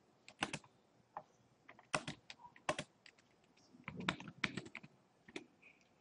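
Computer keyboard typing: faint, irregular keystrokes in short runs with pauses between them.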